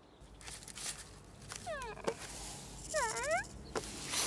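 Two short, high squeaky cries from a small cartoon creature, about two seconds in and again about three seconds in; the first slides down in pitch and the second dips and rises. A few light clicks sit between them over faint forest ambience.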